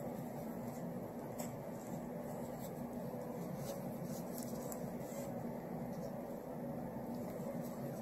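Quiet room tone: a steady low hum with a faint background hiss and a few soft ticks.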